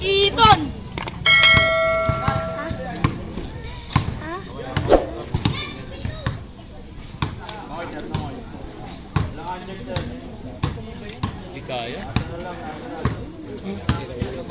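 A basketball being dribbled on a concrete court: a run of short, irregular bounces. About a second in, a steady held tone sounds for roughly a second and a half.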